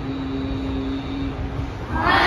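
A single male voice holding one long, drawn-out note of Quran recitation over a low steady rumble, breaking off just before a group of boys comes in reciting together.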